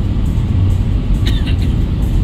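Steady low rumble of a moving vehicle's engine and road noise, heard from inside the vehicle, with a brief high-pitched squeak a little past the middle.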